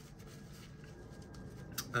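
Faint rubbing and rustling of a paper tissue being wiped over an oil-stained cotton top.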